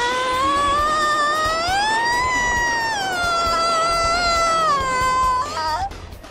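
A long, high drawn-out scream from a woman's voice, held without a break. It rises slowly in pitch to a peak about two seconds in, sinks back, wavers briefly near the end and fades out.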